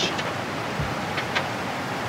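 Steady rushing outdoor background noise with a few faint clicks.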